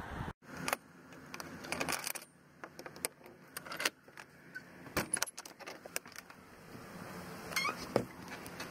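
Metal combination padlock and door hasp clinking and clicking as the padlock is unhooked and taken off, then a wooden shed door being pulled open; irregular sharp clicks and knocks throughout.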